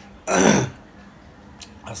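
A man burps once, loudly, after finishing a meal: a single short, rough burst about a quarter of a second in, lasting about half a second.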